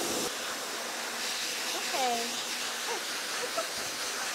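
Pet grooming blow dryer blowing a steady rush of air through its hose and nozzle onto a wet dog's coat.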